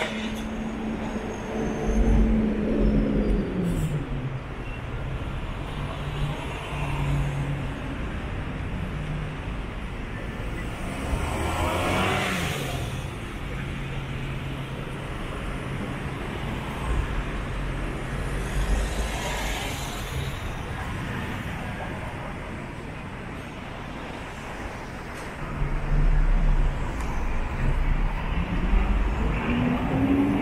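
City street traffic: a nearby vehicle's engine holds a steady low tone that drops in pitch about three seconds in and rises again near the end, while cars pass twice, around the middle and two-thirds of the way through.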